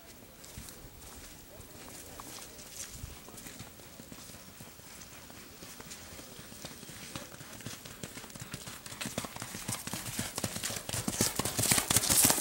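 A horse's hooves striking dirt ground in a steady run of hoofbeats. They grow louder as the horse comes closer and are loudest near the end.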